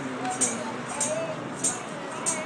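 Metal jingles struck in a steady beat, three strikes about two-thirds of a second apart, over the voices of a crowd.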